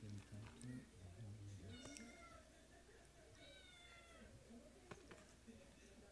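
A domestic cat meowing faintly, twice: two short calls that fall slightly in pitch, about two seconds and three and a half seconds in.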